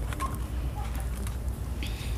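Shop-aisle background noise: a steady low rumble with faint scattered clicks, and a short rustle near the end.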